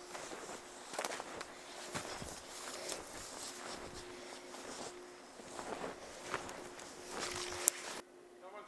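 Footsteps crunching through deep snow at a walking pace, with a sharp click near the end.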